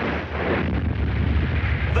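A cartoon sound effect of a deep, steady rumble like distant explosions, signalling the approaching monster's destruction.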